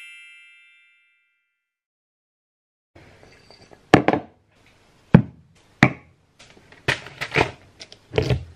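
The last ring of a chime dies away at the start, then after a silence, from about three seconds in, a series of sharp knocks and clunks as glass jars and food containers are set down on a stone kitchen worktop, with quieter handling in between.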